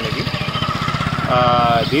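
An engine idling steadily close by, a fast even pulsing low in pitch, with a man's voice over it near the end.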